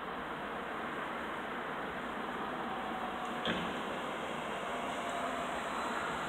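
Steady outdoor street ambience: an even hum of distant city traffic, with one brief knock about three and a half seconds in.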